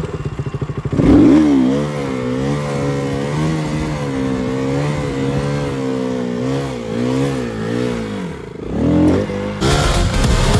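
Motorcycle engine ticking over, then revved hard about a second in as the front wheel is lifted into a wheelie. The revs are held with a slight waver for several seconds, dip briefly and rise again, and are cut off by music near the end.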